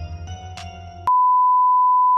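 Background music with held notes cuts off about a second in, and a loud, steady single-pitch test-tone beep takes over: the sine tone played with television colour bars.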